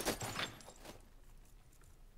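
The fading tail of a hit or crash in a movie fight scene, dying away over the first half second. A couple of faint knocks follow, then low quiet.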